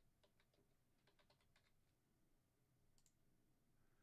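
Near silence, with faint computer keyboard typing: a quick run of key clicks over the first second and a half, then a single faint click about three seconds in.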